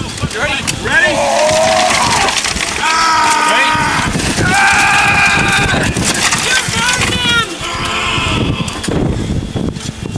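Several people shouting and calling out over one another, the words unclear, one voice holding a long high call about five seconds in. Debris clatters and scrapes throughout, over a faint steady low hum.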